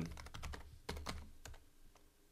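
Computer keyboard keys being typed: a handful of separate keystrokes, a few per second, entering a password.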